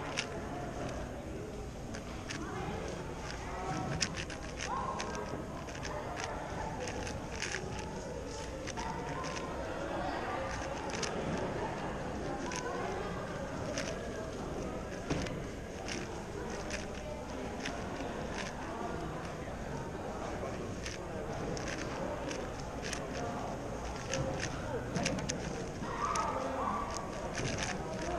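Irregular clicking and clacking of a 4x4 speedcube's plastic layers being turned in the hands, over a steady murmur of voices in the hall.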